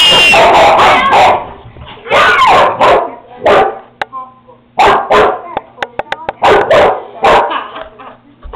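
Dogs fighting, with a string of short, loud barks and snarls throughout. A girl gives a loud, high scream at the very start.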